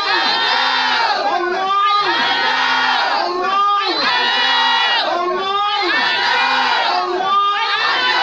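A man chanting a short prayer phrase into a microphone together with a crowd of voices, the same phrase repeating in a steady rhythm about every two seconds.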